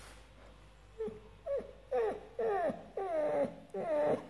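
American Staffordshire terrier whining: a run of about six short, wavering cries starting about a second in. The dog is still groggy from general anaesthesia.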